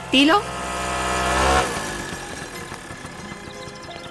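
A motor scooter's small engine drawing closer and getting louder, then cut off suddenly about a second and a half in as the scooter pulls up.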